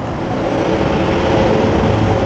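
A motor vehicle passing by, its engine and tyre noise swelling to a peak and then easing.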